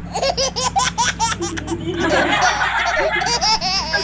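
Women laughing: a run of quick, rhythmic ha-ha bursts, then more voices joining in about halfway through.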